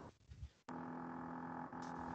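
Steady low hum with several fixed pitches, picked up by a participant's open microphone on a video call. It drops out briefly at the start and comes back abruptly about two-thirds of a second in.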